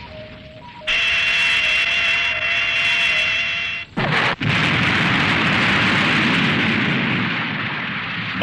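A loud explosion sound effect bursts in about a second in and carries on for several seconds, broken briefly near the four-second mark, with a high steady tone over it at first.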